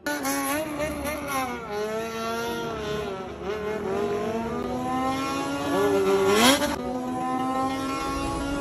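Several motorcycle engines revving at once, their pitches rising and falling over one another, with one sharp rev up about six and a half seconds in.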